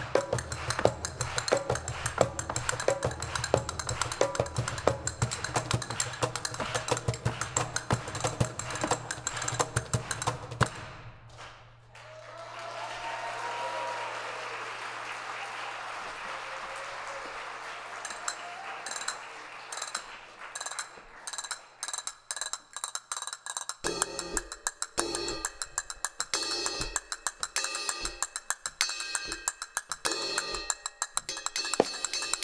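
Live hand-percussion solo: rapid strokes on conga and cymbal that break off about eleven seconds in. A stretch of audience applause with some voices follows, and rapid percussion starts up again for the last few seconds.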